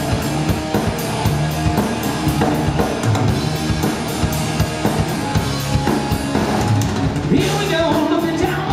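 Live rock band playing an instrumental passage: electric guitars, bass guitar and a drum kit keeping a steady beat with cymbal strokes about four times a second. The lead vocal comes back in near the end.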